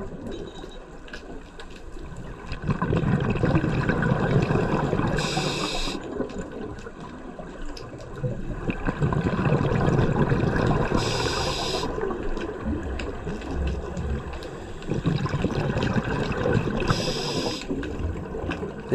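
Scuba diver breathing underwater through a regulator: a few seconds of rumbling, gurgling exhaled bubbles, then a short hiss of inhaled air through the demand valve. The cycle repeats about every six seconds, three times over.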